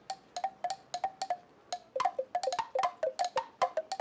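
Cartoon sound effect of wooden clogs clacking on a street as several people walk: a run of quick, hollow clacks, each with a short pitched ring, growing busier about halfway through.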